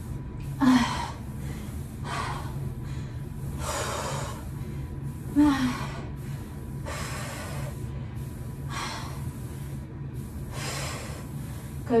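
A woman breathing hard and rhythmically while working through lunges, one forceful breath every second and a half to two seconds, with a short grunt about a second in and another near the middle. A steady low hum runs underneath.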